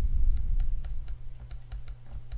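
A pen stylus clicking and tapping on a tablet screen during handwriting: an irregular run of light clicks, several a second, over a steady low hum.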